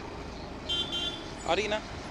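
Steady street traffic hum with a brief high-pitched horn toot lasting about half a second, followed by a short spoken syllable near the end.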